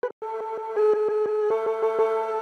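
Slices of a Middle Eastern string sample played from a MIDI keyboard through Ableton's Simpler in slice mode: one sustained string note chopped by rapid repeated attacks, about ten a second, stepping in pitch twice.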